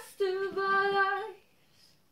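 A teenage girl singing unaccompanied, holding one steady note for about a second before stopping.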